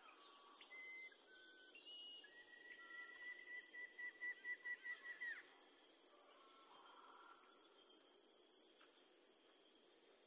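Faint jungle-style ambience: a steady high-pitched insect chorus like crickets. Over it come short whistled bird-like calls, and a held whistle in the middle that pulses about four times a second before sliding down in pitch.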